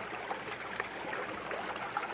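Shallow river current running over rocks close to the microphone, a steady rush of water.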